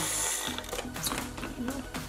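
Personal blender grinding flax seeds into meal with a steady high whirring hiss that cuts off about half a second in, followed by a few light clicks as the plastic jar is handled, over background music.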